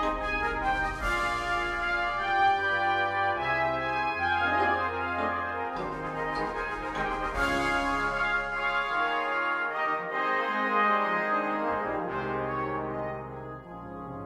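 Full brass band, with trombones and low brass, playing a jubilant, triumphant passage with the tune over moving bass notes, heard as notation-software playback. There are bright crashing accents about a second in and again past the middle, and it eases off a little near the end.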